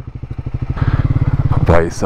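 Triumph Speed 400's single-cylinder engine running, growing louder about a second in as the bike pulls away.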